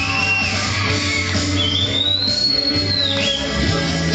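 Live band playing an instrumental passage with bass, guitar and a steady beat, no singing. About a second and a half in, a high whistle-like tone slides up, holds for about a second and a half, then falls away.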